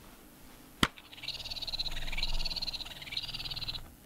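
Battery-powered Star Trek tribble toy trilling: a single click about a second in, then a fast, wavering warble for nearly three seconds.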